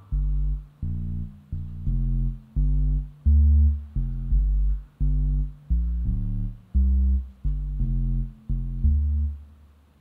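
Computer-generated synthesizer bass line: a run of about thirteen deep notes at a jungle tempo of 172 bpm, with random pitches fitted to a musical scale, some notes short and some held longer.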